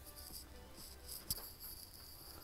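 Faint, scratchy strokes of a flat paintbrush's bristles dry-brushing acrylic paint across a painted plaque, coming and going irregularly. There is one sharp click a little past halfway.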